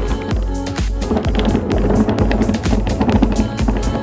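Electronic music with a steady beat. From about half a second in to near the end it is overlaid by a rough rolling rumble.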